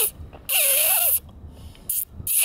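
A person laughing in short, breathy, squeaky bursts: one at the start, a longer one about half a second in, and another at the end.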